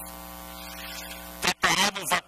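Steady electrical mains hum with a buzzy stack of overtones and a little hiss in the sound feed, cutting off abruptly about one and a half seconds in as a man's speech starts.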